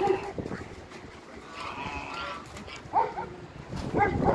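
Farm animal calls: a few short pitched cries, one near the start, a longer one around the middle and a short rising one about three seconds in.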